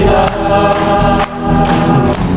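Choir singing a gospel song with instrumental accompaniment.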